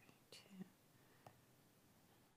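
Near silence: room tone, with a faint spoken word about half a second in.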